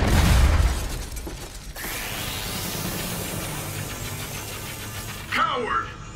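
Animated-series blast sound effect: a loud crash with deep rumble and shattering debris that dies away about two seconds in. A rising sweep then leads into a steady low dramatic score, with a short vocal sound near the end.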